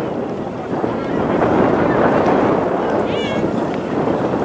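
Wind rushing over the microphone. About three seconds in, a short high-pitched shout from a distant voice.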